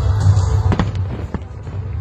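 Aerial firework shells bursting over a continuous low rumble, with two sharp cracks about half a second apart near the middle.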